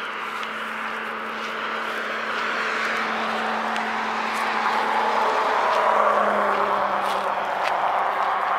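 Road traffic, a steady rush of passing cars over a low steady hum, growing louder around five to six seconds in.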